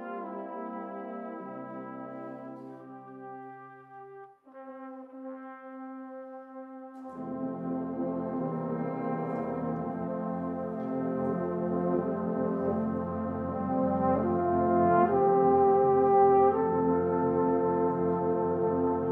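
Salvation Army brass band playing slow, sustained chords. About four seconds in the sound drops briefly and a single held line carries on; at about seven seconds the full band comes back in with the basses and builds louder toward the end.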